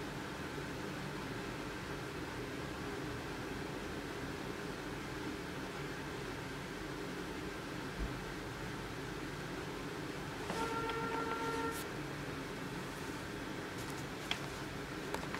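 Steady room background noise with a faint hum, a small thump about eight seconds in, and a steady tone lasting just over a second about ten and a half seconds in.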